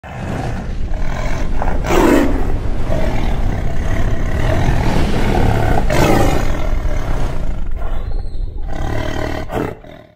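Loud sound effect for a channel logo intro: a deep, noisy rumble that swells sharply about two seconds in and again about six seconds in, then thins out and dies away near the end.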